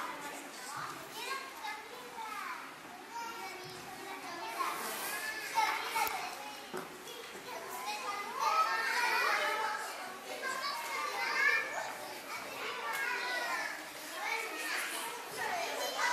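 Many young children chattering and calling out at once in a large gym, their overlapping high voices growing louder about four seconds in.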